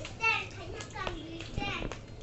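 Children's voices: a loud high-pitched call just after the start, then more short calls and chatter.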